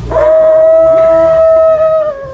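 Conch shell horn being blown: one long, loud, steady note that slides up into pitch at the start and wavers slightly near the end.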